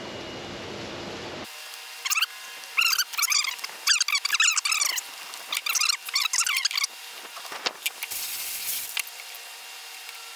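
Birds chirping in repeated short bursts of high calls, with a brief hiss about eight seconds in.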